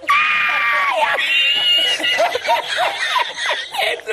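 A man laughing hard in a high, squealing voice: two long held shrieks in the first two seconds, then a quick run of short laughs.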